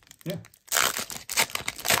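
Foil-lined Topps Chrome Platinum trading card pack wrapper being torn open by hand: a run of loud, sharp crackling rips and crinkles starting just under a second in.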